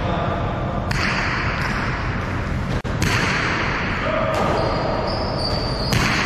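Jai alai pelota hitting the fronton's front wall, sharp cracks about a second in and about three seconds in, each echoing long in the large concrete hall.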